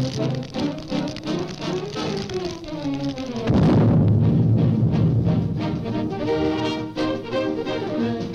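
Orchestral cartoon score with busy, gliding string and brass runs, then about three and a half seconds in a sudden loud, low timpani-heavy crash that rumbles on under sustained chords.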